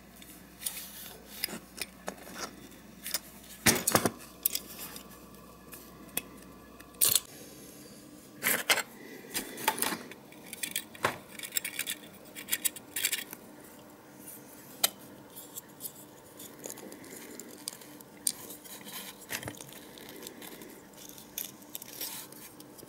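Small metal clicks, taps and scrapes of hands working on die-cast Matchbox Volkswagen Camper bodies, including a drill bit turned by hand to scrape out a damaged windshield opening. The clicks are irregular, with the loudest around 4 seconds in and again around 8 to 10 seconds in.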